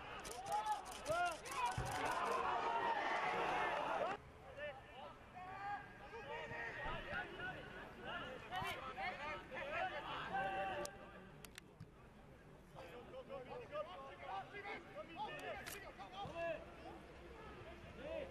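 Indistinct shouts and calls of players and spectators at a football pitch, with a quick run of sharp clicks in the first two seconds. The sound drops abruptly about four seconds in and goes on quieter.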